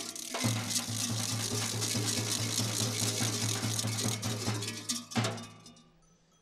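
Large kukeri waist bells, heavy metal cowbell-type bells, clanging together in a rapid, steady rhythm as the mummers shake them. About five seconds in the rhythm stops with one last clang that rings out and dies away.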